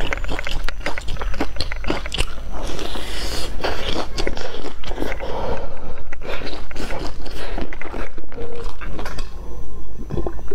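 Close-miked biting and chewing of a crisp, crumb-coated deep-fried pastry with a red bean paste filling: a dense, loud run of crunchy crackles.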